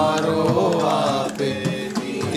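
Voices chanting a Hindu devotional hymn in a sung melody, accompanied by a harmonium holding a steady drone.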